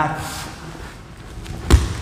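A single heavy thud of a body landing on a grappling mat as a training partner is swept over, near the end.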